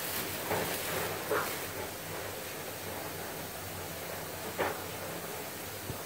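Plastic shopping bag rustling and crinkling softly as it is handled and opened, with one short tap about four and a half seconds in.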